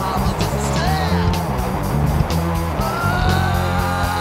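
Fast, loud hardcore punk song played from a 7-inch vinyl record: dense distorted band sound with rapid, regular drum hits. A long held high note comes in about three seconds in.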